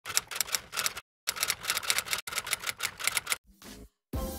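Typewriter keystroke sound effect: rapid runs of sharp clicks, broken by two short silences, then a brief softer low sound near the end.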